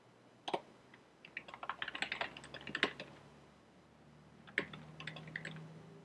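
Typing on a computer keyboard: a single keystroke about half a second in, then a quick run of keystrokes over the next two seconds and another short run near the end.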